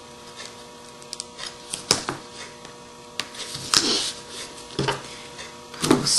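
Paper and red double-sided sticky strip being handled: scattered light rustles and clicks, with a sharp tap about two seconds in and a longer rustle around four seconds, over a steady electrical hum.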